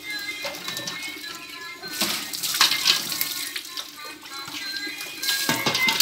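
Water poured from a mug splashing over a baby and onto wet concrete, in two loud surges: about two seconds in and again near the end.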